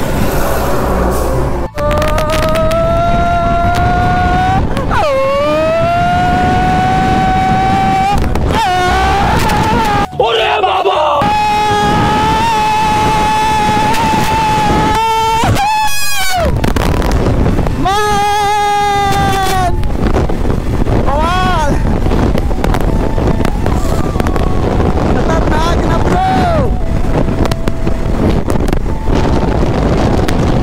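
KTM RC 200's single-cylinder engine pulling hard through the gears under way. Its pitch climbs, dips at a shift about five seconds in and again near nine seconds, then holds steady at cruise, with later short rises and falls as the throttle is worked. Wind rushes over the microphone throughout.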